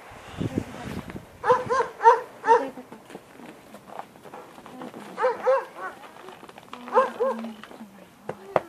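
A dog barking off-screen in quick, high yaps: a run of about four, then two, then two more.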